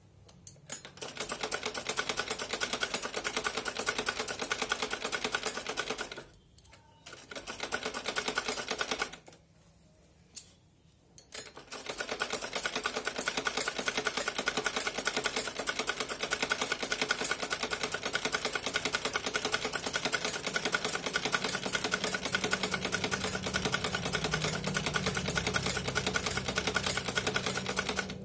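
Sewing machine running, stitching a seam through the blouse fabric and its pinned lining with fast, even ticking of the needle. It stops twice for a second or two, around six and nine seconds in, then runs on steadily.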